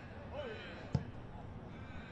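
A single dull thud about a second in: a boot striking an Australian rules football on a set shot at goal, heard over faint ground ambience.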